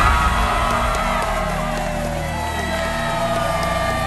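Music playing with a crowd cheering and whooping over it.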